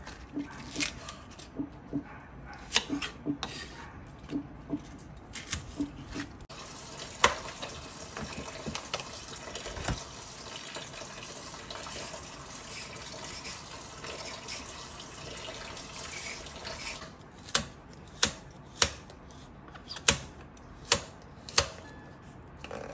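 A kitchen knife chopping mustard greens on a wooden chopping board in irregular strokes. From about six seconds in, a tap runs steadily into a stainless-steel sink for some ten seconds. Then, near the end, come about six sharp chops of the knife cutting carrots into chunks on the board.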